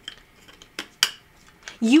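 Back piece of a clear round keychain being pressed into place by hand, making a few sharp clicks, the loudest about a second in.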